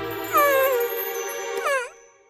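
A cartoon character's high, pitched vocal cry that falls in pitch about a third of a second in, then a second short dip-and-rise near the end, over sustained background music.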